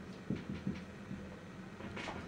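Dry-erase marker writing on a whiteboard: a series of faint, short strokes and taps as a word is written out.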